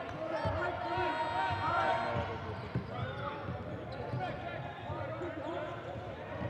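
A basketball being dribbled on a hardwood court, with low thuds now and then, under the babble of crowd voices in an arena.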